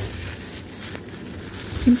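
Soft rustling and crinkling of thin disposable plastic gloves as hands handle and push together the slices of a cake roll, over a steady hiss.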